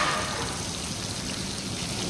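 Masala-coated tuna steaks shallow-frying in oil in a pan, a steady sizzle.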